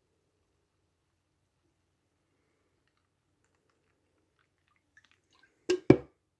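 Beer being poured from a can into a pint glass, very faint, followed near the end by two sharp knocks close together as the can and glass are handled.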